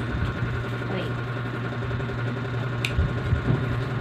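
A steady low hum runs under everything, with one short sharp click about three seconds in.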